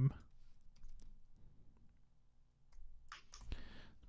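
Computer keyboard keys clicking faintly in scattered keystrokes as code is typed, with a short hiss near the end.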